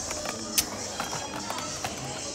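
Background music with faint voices, over which plastic toy blister packs click and knock together as they are flipped on their pegs. The sharpest click comes about half a second in.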